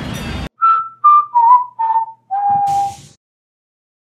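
Outdoor crowd noise cut off abruptly about half a second in. Then a short whistled tune of five notes stepping down in pitch, the last held longest.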